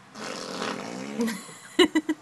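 A raspberry blown with the lips against a baby's back: a buzzing, fart-like lip noise lasting about a second, followed by a few short, loud, sharp sounds near the end.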